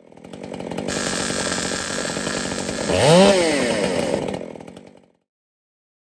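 A chainsaw running, revving up once and dropping back about three seconds in, fading in at the start and out after about five seconds.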